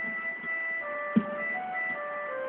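Electronic keyboard playing a slow melody in held notes, with one percussive beat about a second in.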